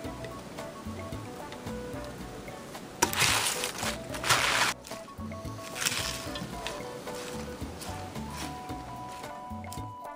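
Background music, with two bursts of rustling as a baby spinach salad is tossed in a bowl: a longer one about three seconds in and a short one near six seconds.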